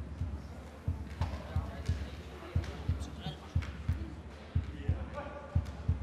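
Rhythmic low thumping in a large hall, a double beat about once a second, with some voices.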